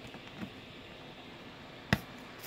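Quiet handling of a taped cardboard shipping box, with one sharp click near the end.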